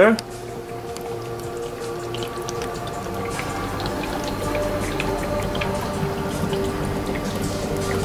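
Magnesium fizzing in dilute hydrochloric acid inside a PVC hydrogen reactor: a faint crackle of many tiny bubbles popping, under steady held tones of soft background music.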